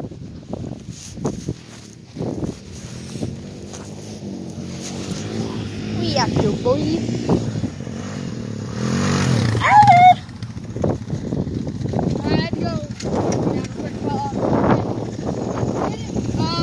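A four-wheeler (ATV) engine running and revving, loudest about nine to ten seconds in, with indistinct voices through much of the stretch.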